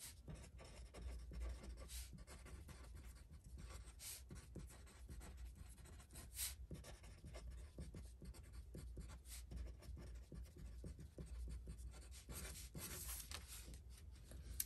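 Permanent marker writing on pattern tracing paper: faint, scratchy strokes in short, irregular spurts as words are written out.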